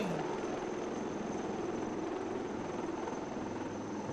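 HAL Dhruv helicopter flying past, with steady rotor and engine noise.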